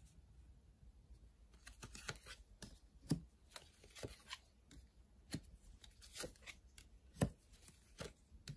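Tarot cards being drawn from the deck and laid down one at a time on the table: faint, scattered taps and slides of card stock, the sharpest tap about seven seconds in.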